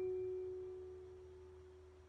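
A single clear, pure-toned musical note struck at the start and slowly fading away over about two seconds: the closing note of the hymn music.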